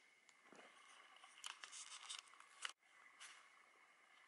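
Near silence: faint, scattered rustles and light ticks, with a brief moment of total silence near three seconds in.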